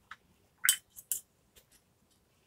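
A few short, sharp clicks and squishy dabs of a watercolour brush being worked against the painting gear, the loudest just past halfway with two more quickly after.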